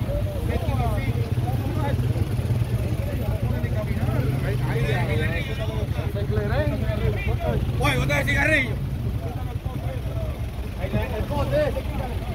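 Indistinct voices of several people talking over a steady low engine rumble, with one voice briefly louder about two-thirds of the way through.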